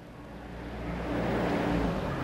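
A motor vehicle passing close by. Its engine and road noise grow louder and peak near the end.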